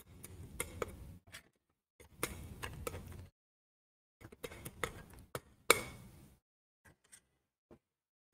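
Palette knife mixing oil paint on a palette: three short bouts of scraping, each a second or so long, with sharp clicks of the blade, then a few faint ticks near the end.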